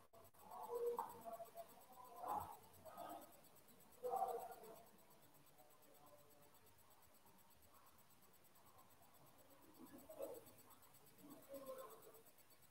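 Near silence: room tone, broken by a few faint, brief handling noises in the first few seconds and again near the end as cards and a soft toy are moved about.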